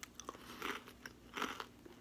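Biting into and chewing a crunchy Parmesan crisp: several short, faint crunches.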